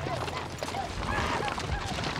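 Horses' hooves clopping irregularly on hard ground as a group of riders' horses move and shift about.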